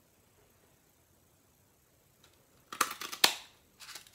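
A Stampin' Up! Daisy paper punch pressed down to cut a daisy out of paper: a quick cluster of sharp clicks and snaps from the punch mechanism starting a little under three seconds in, with one more click just after.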